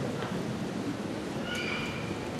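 Low murmur and rustle of a seated audience in a hall before the orchestra plays, with a brief high-pitched squeal in the last half second.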